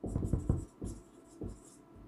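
Dry-erase marker writing on a whiteboard: a quick run of short strokes in the first half second, then a few separate strokes as the word is finished.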